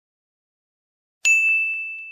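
A single high, bell-like ding, struck once after silence a little over a second in, its clear tone ringing on and slowly fading.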